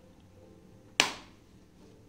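A single sharp plastic snap about a second in, dying away quickly: a clip of an Asus TUF laptop's plastic bottom cover popping loose as a coin pries along its edge.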